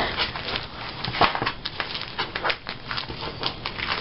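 Clear plastic sheet-protector pages of a ring binder being flipped and handled, a string of irregular crinkling clicks and crackles.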